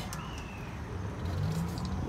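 Tour tram running at low speed with a steady low rumble, and a faint short falling chirp a fraction of a second in.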